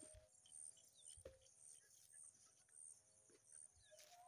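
Faint rural field ambience: a high, pulsing sound and scattered small bird chirps, with three soft knocks.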